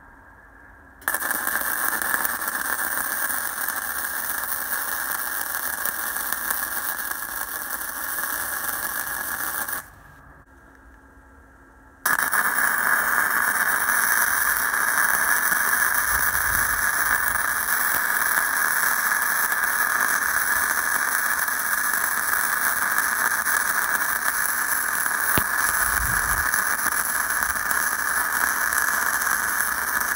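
Uptime MIG160 inverter MIG welder running self-shielded flux-core wire: the arc crackles steadily as a bead is laid for about nine seconds, stops for about two seconds, then strikes again for a second, longer bead.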